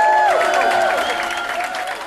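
A crowd cheering and applauding loudly, several people holding long whooping shouts over the clapping; it begins to die down near the end.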